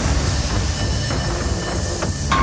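A loud rushing noise with a deep rumble underneath, cutting in suddenly at the start: a dramatic sound effect.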